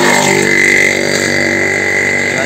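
A motor vehicle's engine running steadily, with a high, steady whine over it.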